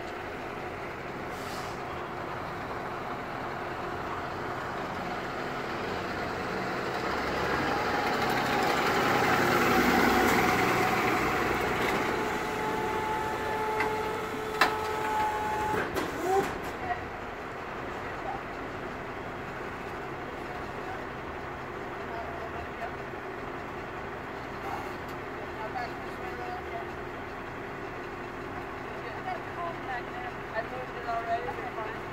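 Vehicle engine idling steadily, swelling to its loudest about ten seconds in and settling again, with a few sharp knocks around the fifteen-second mark.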